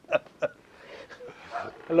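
A man's laughter trailing off in two short bursts, then a man saying "Hello?" near the end.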